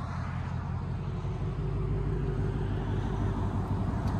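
2021 Ford Mustang Mach 1's 5.0 L V8 idling steadily with its active exhaust valves closed, a low even idle from the quad tailpipes.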